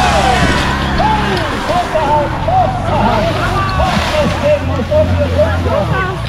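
Portable fire pump engine running steadily, its pitch shifting about a second and a half in, while water sprays out of a hose coupling that was not yet closed. People shout and call over it.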